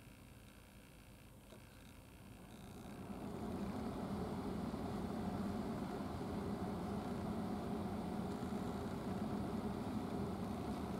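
A steady mechanical hum, like an engine running, that swells up about three seconds in and then holds steady.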